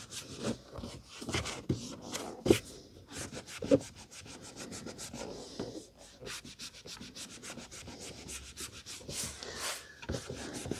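A cloth rubbed back and forth over a paperback's card cover and inside pages, in quick scrubbing strokes that run faster in the second half, with two louder knocks in the first four seconds.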